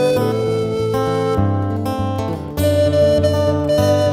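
Wooden recorder playing a slow melody in long held notes over acoustic guitar accompaniment, played live as a duo. The recorder line breaks off briefly a little after two seconds in before the next phrase starts.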